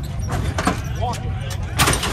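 Hydraulic lowrider truck hopping: the front end drops from full height and lands with a loud clank near the end, with lighter knocks from the suspension before it.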